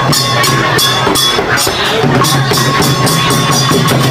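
Khmer chhay-yam drum-dance music: long goblet drums hand-struck by the dancers in a quick, steady beat of sharp strokes, about three to four a second, over a held high tone.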